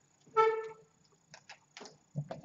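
Whiteboard markers handled in the hand: a short squeak about a third of a second in, then a few light plastic clicks of the caps.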